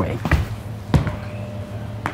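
Two dull thumps of feet landing on a wooden floor, about two-thirds of a second apart, as a person is rolled off balance and stumbles, over a faint steady low hum.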